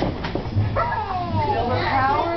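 Several young children squealing and calling out in excitement, high voices overlapping, with a brief swish of the parachute's nylon fabric at the start.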